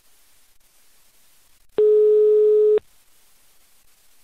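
Telephone ringback tone: one steady beep about a second long, the line ringing at the called end while the call waits to be answered.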